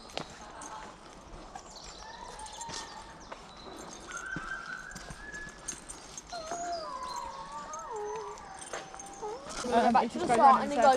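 A child howling like a wolf: three long, drawn-out high calls, the last one wavering.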